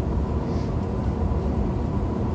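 Steady low rumble of a room's ventilation, an even drone with no distinct events.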